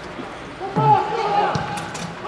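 Football match sound from the pitch: a player's long shout starting just under a second in, and a sharp thud of the ball being kicked about one and a half seconds in.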